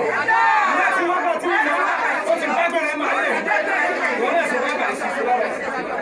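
Speech: many voices talking or praying aloud at once, with a man's voice through a microphone among them.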